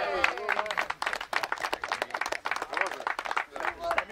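A small group of people clapping, with dense, irregular hand claps, and men's voices calling out over them near the start.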